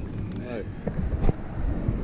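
Wind buffeting the microphone as a steady low rumble, with a brief voice sound about half a second in and a couple of light knocks about a second in.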